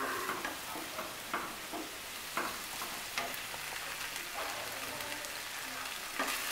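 Potato and raw banana pieces frying in oil and spice paste in a nonstick pan: a steady sizzle, with scattered scrapes and taps of a wooden spatula stirring. The masala is at the sautéing stage, just beginning to release its oil.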